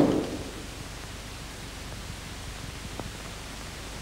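The last of a door slam dying away, then the steady hiss of an old film soundtrack, with one faint click about three seconds in.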